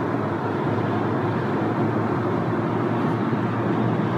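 Steady road noise inside the cabin of a moving car: an even drone of tyres and engine.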